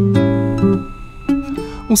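Acoustic guitar plucking a few slow notes that ring on, between sung lines. A voice comes in again right at the end.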